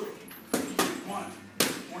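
Boxing gloves smacking into focus mitts: two sharp punches about a second apart.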